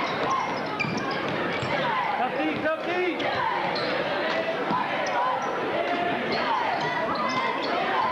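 A basketball being dribbled on a hardwood gym floor during live play, over the steady chatter and shouts of crowd and players filling the gym.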